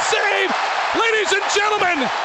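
A hockey play-by-play announcer shouting excitedly, words not made out, over a noisy cheering arena crowd.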